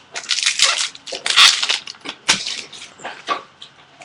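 Hands handling a stack of baseball cards, thumbing and sliding the cards against each other: several short dry rustling bursts, the loudest about a second and a half in.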